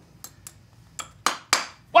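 A farrier's hammer driving a copper-coated horseshoe nail through a horseshoe into a horse's hoof wall: about five quick, sharp metallic taps, the last few the loudest.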